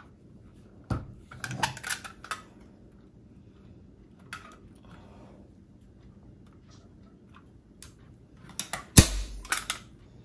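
A staple gun firing staples through a fleece blanket into an ottoman frame: a sharp snap about a second in, a few lighter clicks just after, and the loudest snap near the end among a short run of clicks.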